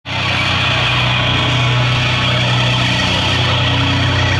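Metalcore band playing live at full volume: a dense, steady wall of distorted electric guitar and bass, with low notes held through.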